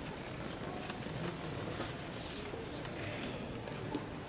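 Carrom men being set by hand in the centre of a carrom board: a few faint clicks and slides of the pieces over a steady background hum of the hall.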